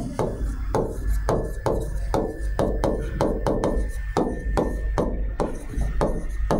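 Stylus knocking and tapping on the glass of an interactive display board while handwriting, a quick irregular run of about three taps a second. A faint steady high whine runs underneath from about a second in.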